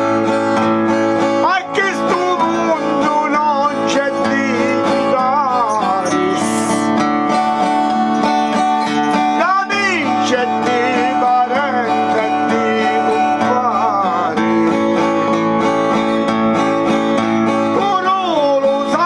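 Acoustic guitar strummed steadily, accompanying a man's voice singing a Calabrian folk ballad in drawn-out, wavering phrases.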